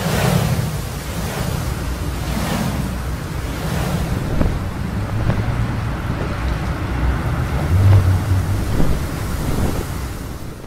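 Loud, continuous rushing wind-like noise with a deep rumble underneath, brightest in a swell at the very start. It is the sound effect of an animated title sequence, not real wind on a microphone.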